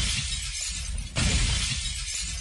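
Glass-shattering crash effect in the routine's music mix, sounding twice: one crash fading at the start and a second about a second in, each with a low boom under it.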